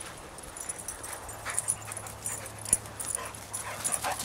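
Two dogs play-fighting, making short vocal sounds that come several times in the second half, with a sharp click a little before the end.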